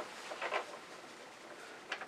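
Faint handling of paper sheets, a soft rustle about half a second in, with a short sharp click near the end.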